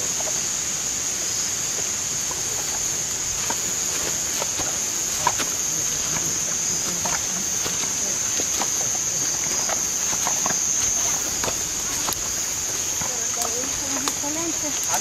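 A steady high-pitched insect chorus at night, with scattered footsteps and rustling of people walking along a trail, and low indistinct voices.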